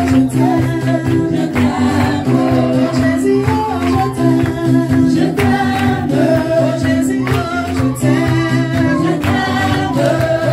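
Church congregation and choir singing a worship song together, with hand clapping along to it.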